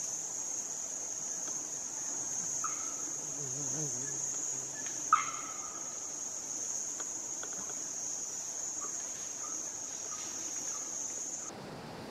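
Steady high drone of forest insects, with faint distant voices a few seconds in and a short sharp call about five seconds in.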